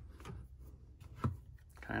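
Quiet handling: a single soft knock about a second in as a plastic bottle and the calculator are moved on a cutting mat, over a low steady room hum.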